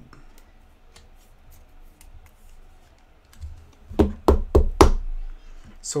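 Plastic clicking and knocking from a trading card being slid into a rigid clear plastic toploader: faint light ticks, then a quick run of five or six sharp knocks about four seconds in.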